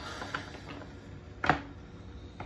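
A small deck of oracle cards being hand-shuffled: soft rustling and light clicks of card edges, with one sharp clack of cards about one and a half seconds in.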